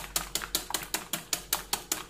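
Metal wire whisk beating a raw egg in a glass bowl, the wires clicking against the glass in a quick, even rhythm.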